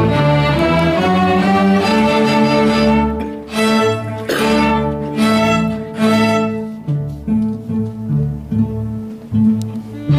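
Student string orchestra of violins, cellos and double bass playing a piece together. The full ensemble plays for the first few seconds, then drops to a quieter passage of separate held chords, and comes back in full at the end.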